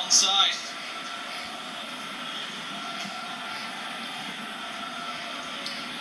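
Steady background noise from a televised football match heard through a TV speaker, after a brief burst of commentary in the first half-second.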